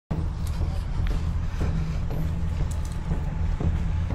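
Outdoor ambience among a group of marchers: a steady low rumble with faint, indistinct voices and a few light clicks.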